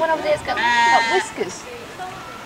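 A goat bleating once near the middle: one high, steady call of under a second.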